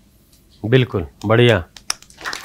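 A man's voice speaking two short words, with a sharp click near the end from a handheld microphone being handled.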